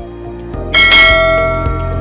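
A notification-bell sound effect: one bright bell chime struck about three-quarters of a second in, ringing on and slowly fading, over background music with a steady beat.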